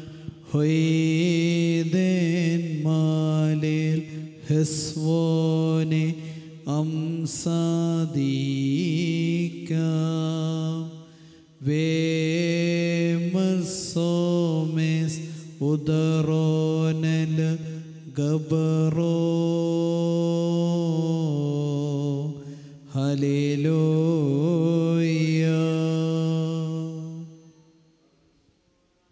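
A male voice intoning a Syriac Orthodox liturgical chant through a microphone, in long sustained phrases with short pauses between them; it fades out just before the end.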